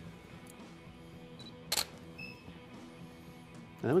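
Single shutter release of a Canon EOS-1D X Mark II DSLR: one sharp click about halfway through, with faint short high beeps just before and after it. Quiet background music plays throughout.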